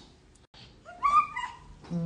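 A baby's brief, high-pitched vocal sound, wavering in pitch, about a second in; otherwise quiet.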